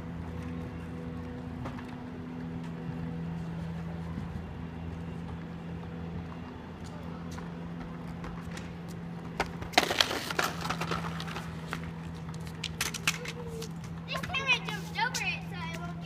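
Outdoor street sound with a steady low hum, broken by a cluster of sharp clacks a little past the middle, plausibly a RipStik caster board knocking on the asphalt, and a few more clicks later. Children's voices call out near the end.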